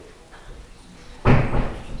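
A single loud thump about a second and a quarter in, followed by half a second of rustling as the phone recording on the table is knocked and moved.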